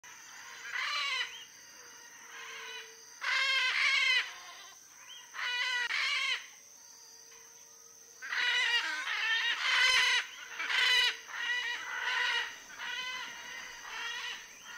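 Blue-throated macaws giving harsh, raspy squawks. The calls come in short bouts at first and follow one another almost without a break from about eight seconds in. A steady high-pitched drone runs underneath.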